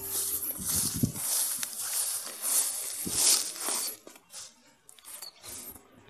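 Irregular rustling and scuffing of grass and handling noise for about four seconds, then mostly quiet with a few faint clicks.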